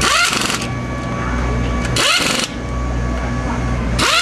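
Pneumatic air ratchet running in two short bursts about two seconds apart, each with a rising whine as it spins bolts on a drag car's multi-disc clutch assembly. A steady low hum runs underneath.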